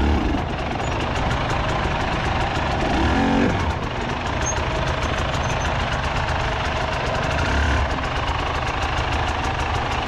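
Two-stroke dirt bike engine running steadily at low revs while the bike picks its way over rocky ground, with a short rev about three seconds in.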